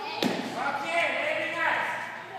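A single sharp thump a quarter second in, followed by raised voices.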